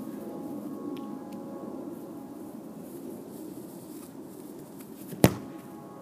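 A single sharp thud about five seconds in, a bare foot kicking a soccer ball. Before it there is only a faint, steady background hum.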